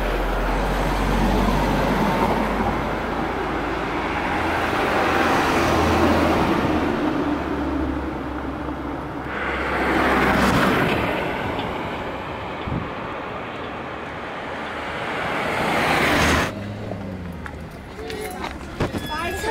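Road traffic: vehicles passing one after another, each swelling and fading, until the sound drops away sharply near the end.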